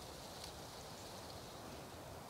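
Faint outdoor ambience: a low, even hiss with a few faint ticks.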